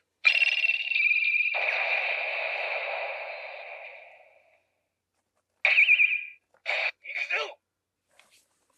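Electronic sound effects from a TAMASHII Lab Laser Blade toy sword's small built-in speaker: a long, steady, high ringing tone with a hissing layer that fades out over about four seconds, then three short bursts near the end.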